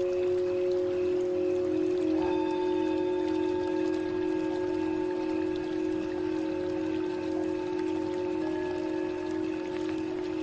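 Tibetan singing bowls ringing in long, steady overlapping tones, with a higher ringing tone joining about two seconds in, over a faint trickle of water.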